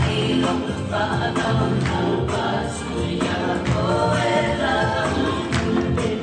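A Pacific Island group song for dance: many voices singing together as a choir, with sharp percussive strikes keeping the beat.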